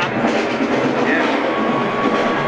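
A marching band's drumline playing a street cadence on snare and bass drums, with rim clicks, under a steady wash of noise. A thin steady whistle-like tone joins about a second in.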